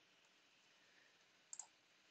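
Near silence, with one faint double click about one and a half seconds in.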